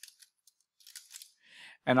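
Computer keyboard typing: scattered faint key clicks as random text is tapped in, followed by a short breath just before speech resumes.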